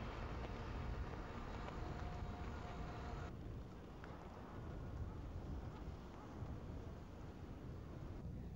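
Outdoor background noise: a steady low rumble with hiss over it. The hiss drops off abruptly about three seconds in.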